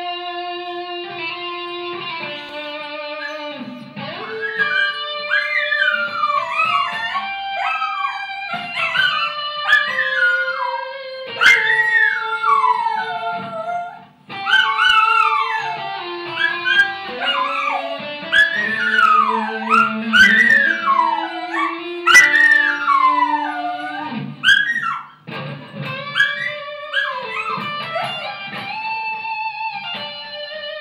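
A dog howling and whining along to an electric guitar, its voice sliding up and down in high wavering notes over the guitar's long sustained notes. The dog joins about four seconds in and breaks off briefly around the middle.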